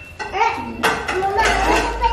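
Indistinct voices with a sharp clatter of dishes at a kitchen sink about a second in.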